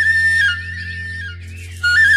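Background music: a solo flute melody holding a high note that breaks off about half a second in and comes back near the end, over a steady low hum.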